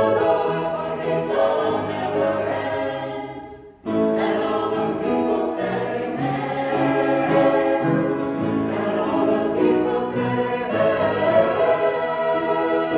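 A small mixed choir of men and women singing in harmony, with a short break between phrases about four seconds in before the voices come back in.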